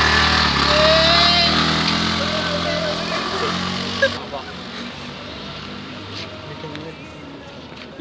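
TVS Ntorq 125 scooter's single-cylinder, air-cooled engine pulling away with two riders aboard, loudest in the first couple of seconds and then fading steadily as it rides off into the distance.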